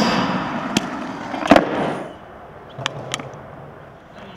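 Skateboard grinding along a metal flat bar with a rough scrape, then a loud clack of the board landing about a second and a half in. The wheels then roll more quietly on concrete, with a few light clicks.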